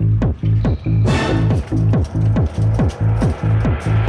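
Electronic dance music with a fast, steady kick-drum beat over a repeating bass note; a hissing wash swells in about a second in.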